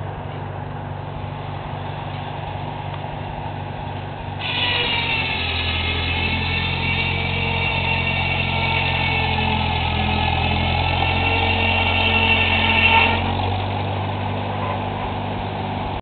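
McCormick-Deering W-6 tractor's four-cylinder engine running steadily, driving a sawmill. About four seconds in, a high ringing whine of the circular saw blade cutting rises over the engine for about eight seconds, with the engine working harder, then cuts off.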